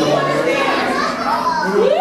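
Children's voices chattering and calling out, high and sliding up and down in pitch, with one rising call near the end.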